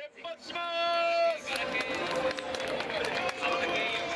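A single long held note, steady in pitch, for about a second near the start, then a large crowd of fans cheering and shouting all at once.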